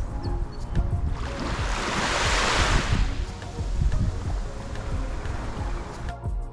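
Small waves washing up on a sandy beach, one wash swelling about a second in and fading out by about three seconds, with wind buffeting the microphone.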